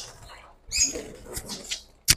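Budgerigars chirping, a short burst of high chirps about a second in and a few single chirps after, over light rustling and handling noise at the clay nest pot.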